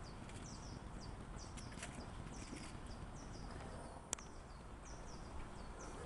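Faint outdoor background with a bird chirping over and over, short high falling notes a few times a second, and a single sharp click about four seconds in.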